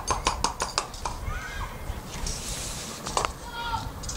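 Cutlery clicking rapidly against crockery, about six light clinks a second, for roughly the first second, then a brief hiss a little past halfway, amid soft voices.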